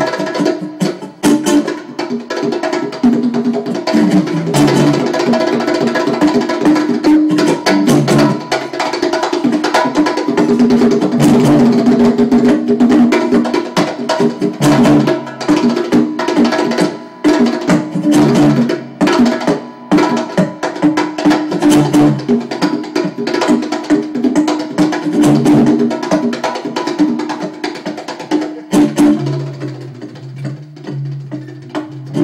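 Live instrumental jam: a hand drum struck in a steady rhythm, with an electric guitar and an acoustic guitar playing over it and no singing. The playing eases off near the end.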